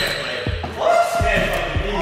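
Basketball bouncing on a hardwood gym floor, a few dribbles roughly half a second apart, under indistinct voices.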